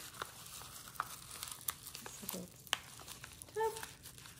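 Packaging crinkling and rustling in scattered small crackles as an item is pulled out of a shipping package by hand.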